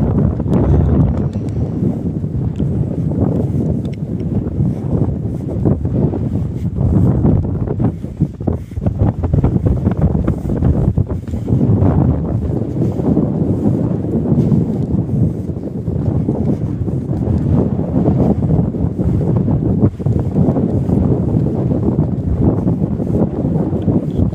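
Wind buffeting the microphone: a loud, low rumble that rises and falls in gusts.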